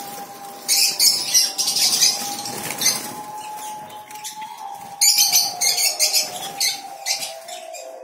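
Caged lovebirds and other small parrots in a breeding aviary chattering, with bursts of loud, shrill screeching about a second in and again around five to seven seconds.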